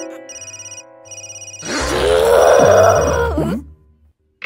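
A cartoon telephone bell rings in rapid trilling bursts with lower steady notes under it. From a little before two seconds in, a loud, drawn-out vocal outburst from the cartoon character rises and falls in pitch over the ringing, and both stop shortly before the end.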